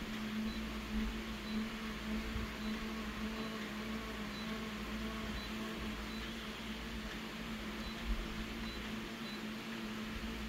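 Steady hum with a low tone and hiss from an office multifunction copier standing ready, its fans running, with a few faint low thumps.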